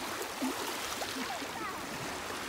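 Small Lake Michigan waves lapping and washing at the shoreline, a steady splashing wash of shallow water.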